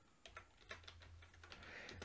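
Faint computer keyboard typing: a short run of separate keystrokes.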